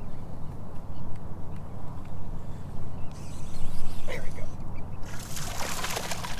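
A hooked fish thrashing and splashing at the water's surface beside a kayak, starting about five seconds in with a burst of sharp splashes, over a steady low rumble.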